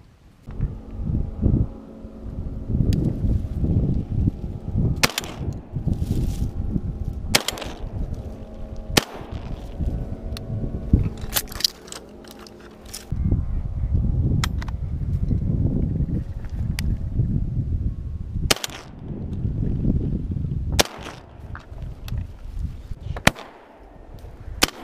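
A jon boat's motor running with a steady drone as the boat pushes through brush. Sharp knocks and cracks come every few seconds.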